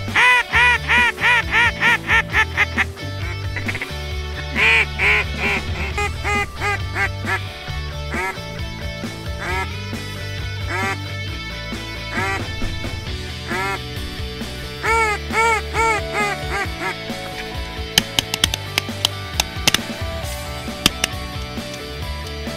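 Duck call blown in a fast run of quacks for the first few seconds, then in shorter groups of quacks, over background rock music. A few sharp cracks come near the end.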